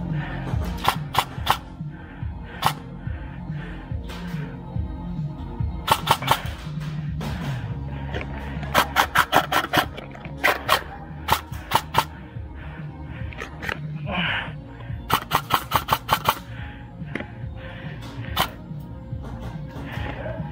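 Airsoft guns firing several short strings of rapid, sharp shots, the longest about a second and a half long near two-thirds of the way through, over background music.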